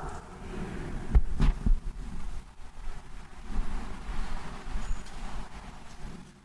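Rustling and shuffling movement in a church, with a low rumble and three dull low thumps just over a second in.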